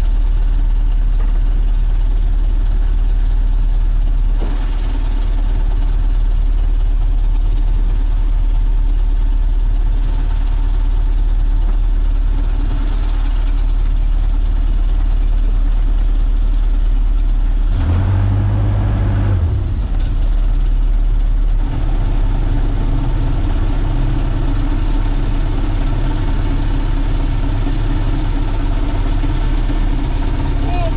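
A small wooden fishing boat's engine running steadily under way, a deep even drone that swells briefly about eighteen seconds in.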